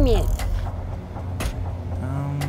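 Rumble and rustle of clothing rubbing against a body-worn camera's microphone, with two short clicks about half a second and a second and a half in.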